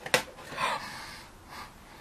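A cardboard advent-calendar drawer is pulled open with a short scrape, then a woman's breathy gasp of surprise about half a second in, fading out.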